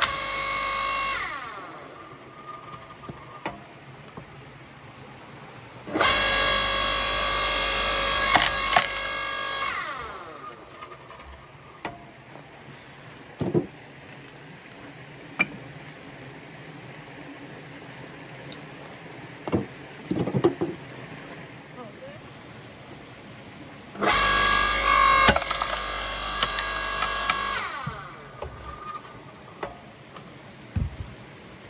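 Forest Master electric log splitter's motor and hydraulic pump running in three stretches of a few seconds each, a steady whine that winds down in pitch each time it is switched off. Between runs, scattered knocks of logs being handled on the splitter bed.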